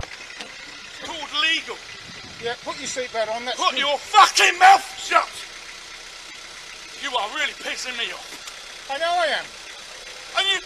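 A voice speaking in short loud outbursts, with the low, steady sound of a car idling close by underneath.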